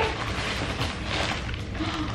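Plastic packaging crinkling and rustling as a plastic-wrapped blanket is handled and lifted out of a cardboard box.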